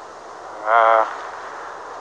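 Speech: one word called out by a single voice, about half a second long, over a faint steady background hiss.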